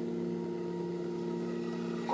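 A sustained chord held on the keyboard, several steady tones sounding together at an even level with no new notes struck.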